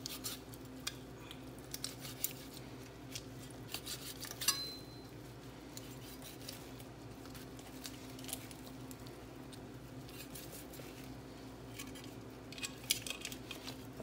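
Large kitchen knife cutting and scraping meat off goat head bones in a stainless steel sink: scattered sharp clicks and scrapes of the blade, busiest in the first few seconds and again near the end, over a steady low hum.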